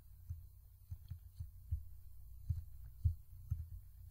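Faint, irregularly spaced low thumps, about eight of them, over a steady low hum: desk and mouse handling noise picked up by a desk microphone while the mouse is being worked.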